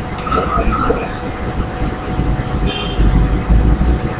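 A steady, loud, low rumbling noise with a faint constant hum running through it, growing heavier near the end.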